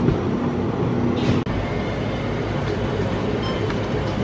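Steady, low rumbling background noise with a brief dropout about a second and a half in.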